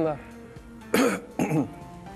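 A short cough or throat-clearing about a second in, with a quieter vocal sound just after, over faint steady background music.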